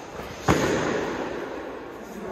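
A strike landing on a body during full-contact sparring: one sharp smack about half a second in, followed by a short echo off the hall's walls.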